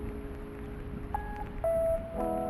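Soft music starting up: a low held chord over a faint rumble, then two single held notes, one about a second in and a louder one near the end.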